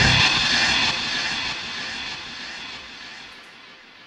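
A steady rushing noise that fades away over about four seconds.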